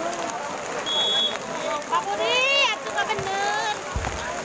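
Spectators around a volleyball court shouting and calling out, several voices overlapping in rising and falling yells. A short, steady, high whistle blast sounds about a second in.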